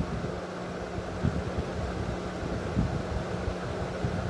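Steady low hum over even background hiss, with a few soft low thumps.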